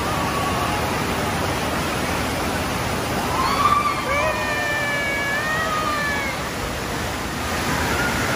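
Steady rush of splashing water in an indoor water park, with water pouring off the end of a slide into the splash pool. In the middle, a child's long drawn-out shout rises above the water.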